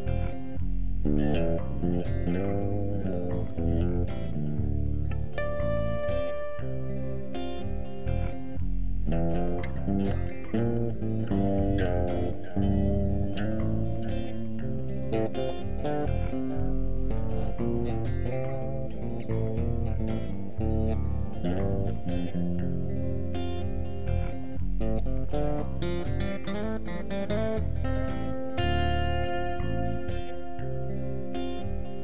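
Instrumental section of a song: electric guitar played through an amp and effects, melodic notes over a looped rhythm backing, with no vocals.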